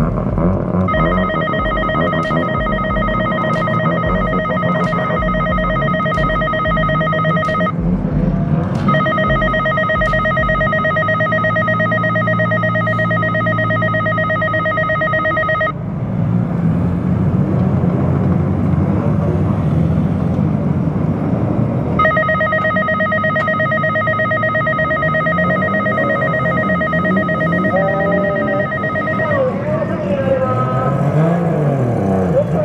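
An electric alarm ringing with one steady pitch, in three long stretches of about seven seconds each with short gaps, over the low idle and rolling of drift cars' engines.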